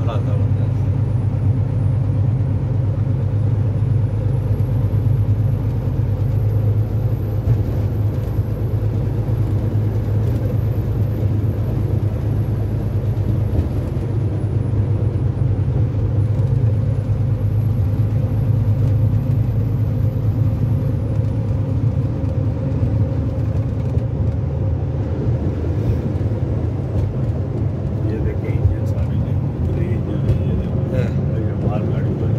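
Steady low drone of a vehicle's engine and tyres heard from inside the cab while cruising at highway speed.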